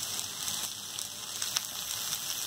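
Chopped spinach leaves cooking in hot oil in a kadai: a steady sizzle, with a couple of sharp crackles about one and a half seconds in.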